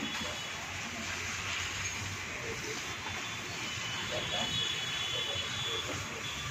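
Steady hiss of water spraying from a garden hose onto a bull and the wet floor as it is bathed.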